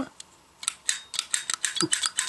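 Plastic toy camera being worked in the hands, giving a rapid run of small plastic clicks at about ten a second, starting about half a second in.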